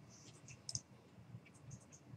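A few faint, short clicks from a computer mouse, with the sharpest just under a second in.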